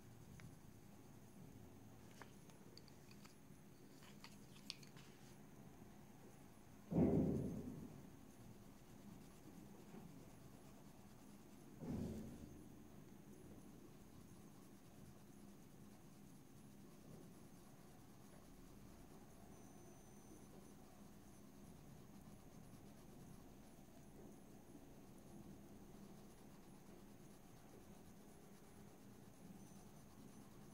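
Two dull, muffled thumps from heavy things being moved by movers out in a hallway, the first about seven seconds in and louder, the second about five seconds later. Between them, faint scratching of a Caran d'Ache Luminance coloured pencil on paper.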